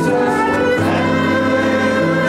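Church choir of mixed men's and women's voices singing an anthem in sustained chords, led by a director.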